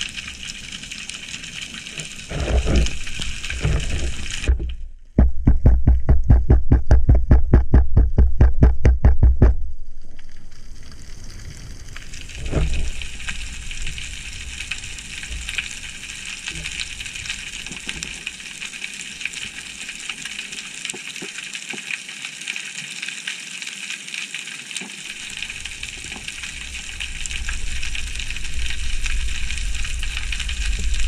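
Underwater ambience picked up through a diving camera: a steady hiss of the sea. About five seconds in, a loud, low rhythmic pulsing of about seven beats a second runs for some four seconds, with a few low thumps before and after it.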